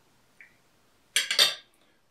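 Metal fork clinking and scraping against a plate, a quick cluster of several sharp clinks a little past halfway, after one faint tick just before.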